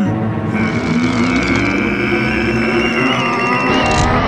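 Cartoon score music: a sustained, tense chord held through, with its upper note climbing slightly in pitch partway through.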